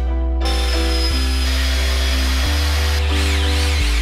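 Background music with a Ridgid cordless drill-driver running over it as it drives screws into a wooden frame. The drill's whine starts about half a second in and lasts a couple of seconds, then changes pitch near the end.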